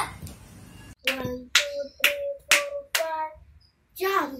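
A child clapping hands five times in an even beat, about half a second apart, starting about a second in.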